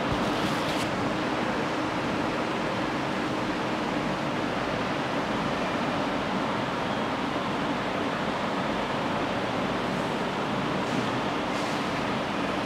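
Steady, even background whoosh with a faint low hum, like a fan running, with cloth being handled rustling faintly just after the start and again near the end.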